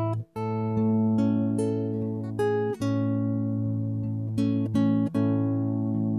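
Guitar picking a slow single-note melody over an A major chord, with the low A bass ringing steadily underneath. The melody notes change about every half second, with brief breaks about a third of a second in, near three seconds and near five seconds.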